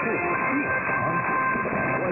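Weak mediumwave broadcast signal on 1548 kHz heard through a software-defined receiver in lower-sideband mode. A faint, voice-like programme sits under static, with two steady whistling tones.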